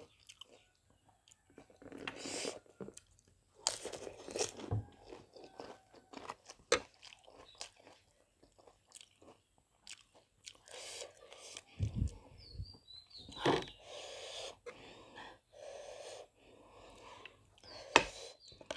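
Close-miked chewing with crisp crunches, as a puffed, fried pani puri shell is bitten and eaten, in irregular bursts and clicks.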